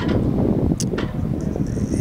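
Steady low rumble, typical of wind buffeting outdoor microphones, under a reporter's question faintly heard off-microphone.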